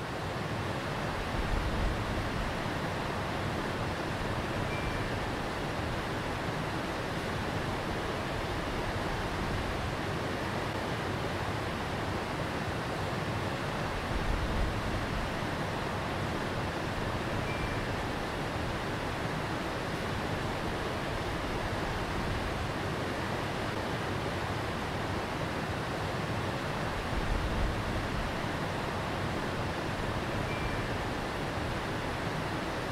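Steady rushing of water running over rocks in a shallow stream, with a brief louder low rumble three times, about every thirteen seconds.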